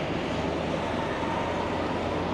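Steady street traffic noise: a low engine rumble under a hiss.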